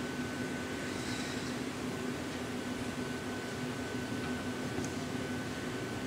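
Steady rush of a gas-fired glory hole and the hot shop's blowers while a glass piece is reheated, with a low hum and a faint high whine that fades out just before the end.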